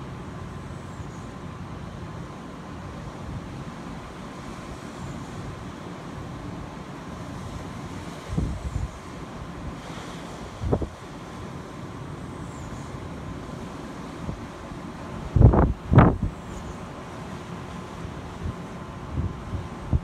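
Steady wash of distant surf with wind on the microphone, broken by sharp gusts buffeting the microphone about eight and a half and eleven seconds in, and twice more, loudest, around fifteen and sixteen seconds.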